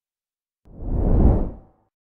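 A single whoosh sound effect that starts about two-thirds of a second in, swells and fades away over about a second: the transition sound of an animated subscribe-button graphic.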